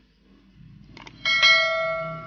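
Subscribe-button overlay sound effect: two short mouse clicks, then a bell chime about a second and a quarter in that rings on and fades away.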